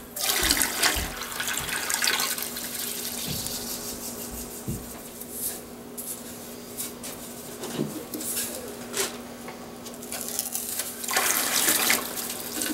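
Salt poured from opened round canisters into a bin of warm water, a steady rushing hiss like running water. It is loudest at the start and again near the end as another canister is emptied, with a few light knocks of the canisters between.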